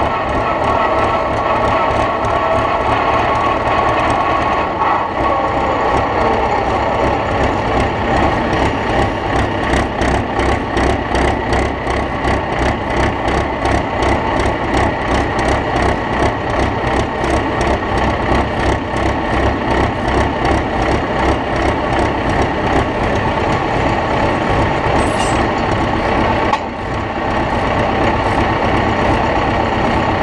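Volvo pulling tractor's engine running hard under load as it drags the weight sledge down the pulling track, heard from the driver's seat as a loud, rapid, even pulsing. Its note falls in the first few seconds as the load comes on, and the sound dips briefly about three-quarters of the way through.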